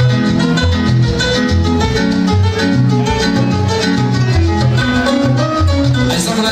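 Latin dance music in the salsa style, played loud over a sonidero's sound system, with a bass line moving note to note in a steady dance rhythm.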